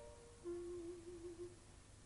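Solo clarinet playing softly and unaccompanied. A short note steps down to a lower note held for about a second, then it goes quiet.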